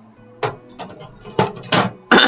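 Craft supplies being handled on a desk: a handful of short knocks and clicks, the strongest two coming about a second and a half in.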